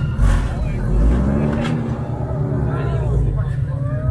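Lowered cars' engines and exhausts rumbling as they crawl out over a curb, loudest in the first second, with voices from the crowd mixed in.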